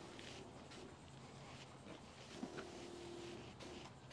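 Faint steady hum of a battery-powered FlowZone backpack sprayer's pump, its pitch dropping and rising again a couple of times, with a faint hiss of spray from the wand.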